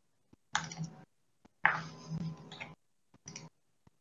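Computer mouse clicks and desk knocks coming through a video-call microphone that cuts in and out, while a screen share is being started. There are a few faint single clicks and two louder sharp bursts, about half a second and a second and a half in.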